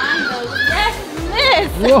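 Excited high-pitched voices, squealing and laughing with sharp rises and falls in pitch, loudest near the end, over background music.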